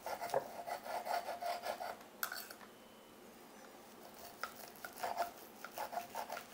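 Knife sawing back and forth through a cooked steak, the blade rasping against the meat in quick strokes. The strokes come in two spells, with a lull in the middle.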